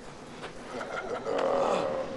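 A man's strained, rasping cry, loud from about a second and a half in, as he is grabbed and pinned by the head. A few short scuffs come just before it.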